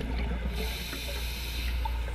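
Scuba diver breathing through a regulator, heard underwater: a hiss lasting about a second and a half over a steady low rumble of water.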